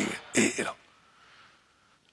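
A man clears his throat once into a handheld microphone, a brief rasp about half a second in.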